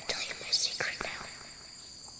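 Night-time crickets chirring in a steady high trill, with whispering over them in the first second.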